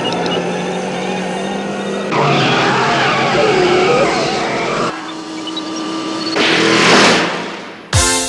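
Car sound effects: a steady electronic hum with a few short beeps, then tyres spinning and squealing in a smoky burnout for about three seconds. A rising rush of noise follows near the end and fades away.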